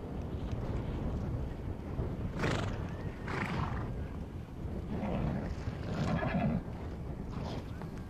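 Horses neighing several times, the longest whinny a little past the middle, over a constant low rumble.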